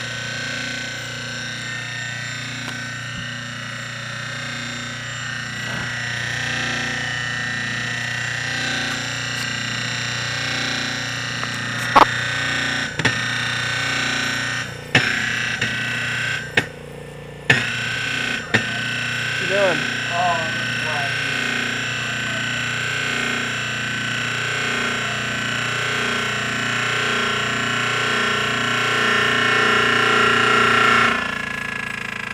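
Old Century repulsion-start, induction-run electric motor running: a steady hum with a high whine, broken by a few sharp knocks and a brief dip in the middle. The rotor is rubbing and hitting on the inside of the casing as it runs.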